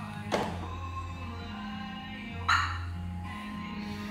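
Background music, with a short click about a third of a second in and a brief, louder chirp about two and a half seconds in: the Clifford 330X van alarm's single arming chirp as the van is locked with its key fob.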